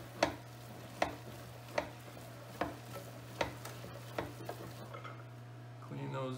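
Hand-cranked stainless-steel meat mixer turning through ground meat. It gives a sharp knock at an even pace, a little under a second apart, about six times, stopping about five seconds in.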